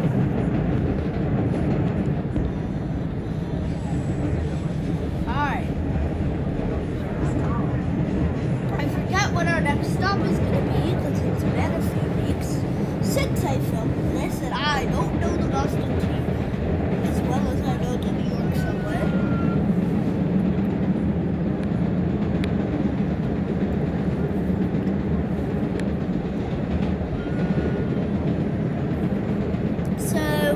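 MBTA Red Line subway car running at speed through a tunnel, heard from inside the car: a steady, even rumble of wheels on rails and the car's motors.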